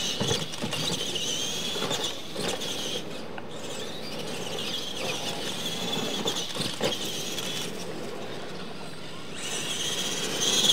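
Electric radio-controlled monster trucks racing on dirt: a wavering high whine of their motors and gears, rising and falling with the throttle, broken by several short knocks as they hit bumps and land off ramps. The whine gets louder near the end.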